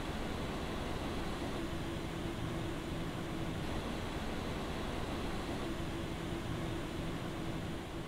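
The ID-Cooling FrostFlow X 240 AIO cooler's stock fans running steadily, a fairly high-pitched whoosh of air with a faint steady tone underneath. The fans are loud enough to drown out most of the RTX 3080 graphics card's fan whine.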